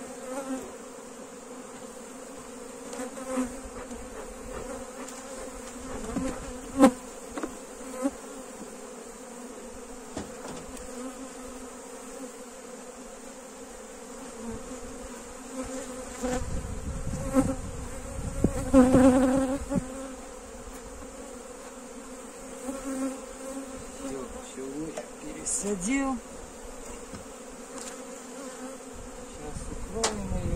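Honeybees humming steadily around an opened hive that has just been smoked. A few sharp knocks come from the wooden hive parts being handled, the loudest about a quarter of the way in, and a louder rushing noise follows a little past the middle.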